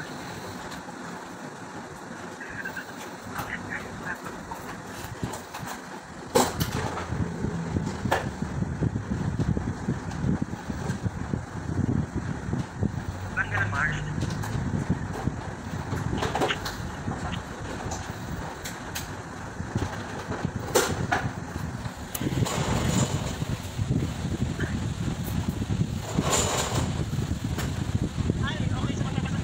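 Hand-held hair dryer switched on about six seconds in, then running steadily as it blows on the client's hair.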